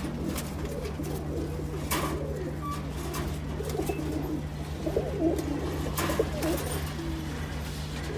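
Caged domestic pigeons cooing in low, repeated murmurs over a steady low hum, with a few short sharp knocks.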